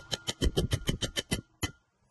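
A Damascus-steel knife blade tapped down hard onto a coin clamped in a steel bench vise: a fast run of sharp metallic taps, about ten a second, over a faint ringing tone. The taps stop about a second and a half in, and one last tap follows.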